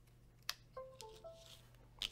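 A faint click of a USB cable plugging into an Arduino board, followed by a short three-note electronic chime from the computer, the sound of a USB device being connected.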